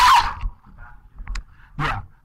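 A person's short burst of laughter, about half a second long, followed by a quieter stretch of room sound.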